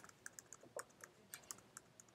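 Faint computer keyboard keystrokes: the Enter key pressed repeatedly, about eight or nine light, uneven clicks.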